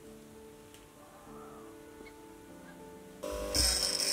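Quiet background music with soft held notes. A little over three seconds in, a louder, even grinding noise starts as a high-speed steel drill-bit blank is pressed against a bench grinder wheel.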